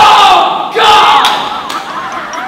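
Loud shouting and laughter from two men, a yell of shock at ice-cold plunge-bath water. A wavering, wobbling tone comes in during the second half.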